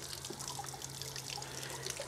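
Water splashing and dribbling out of an RV water heater's drain opening while a tank-rinser wand sprays inside the tank, flushing out calcium buildup: a faint, steady spatter. A faint steady low hum runs underneath.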